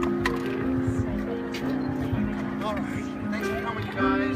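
Live band playing a slow backing of long held chords, with people talking in the crowd over it.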